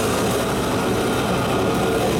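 Extreme metal band playing live at full volume, close to the drum kit: fast drumming with cymbals sounding continuously over distorted band noise, forming one dense, unbroken wall of sound.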